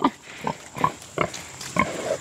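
Mangalitsa–Berkshire cross pig giving several short grunts as it comes up to its feeding spot expecting to be fed.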